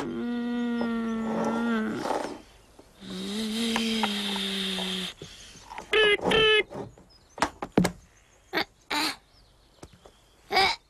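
A boy droning with his voice while he plays: two long, steady low drones of about two seconds each, then a few short, higher bursts.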